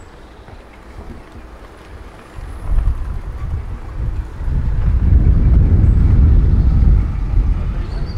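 Wind buffeting the microphone: a low, fluttering rumble that builds from about two seconds in, is loudest over the last few seconds and falls away at the end.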